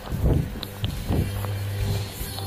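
Knocks and rubbing from a phone being handled and moved about, over a low steady hum.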